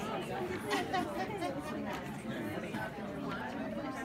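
Chatter of many overlapping voices: a roomful of adults talking in pairs at once.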